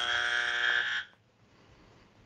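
Game-show buzzer sound effect: one flat, steady buzz about a second long that cuts off sharply, sounding as the wrong answer is rejected.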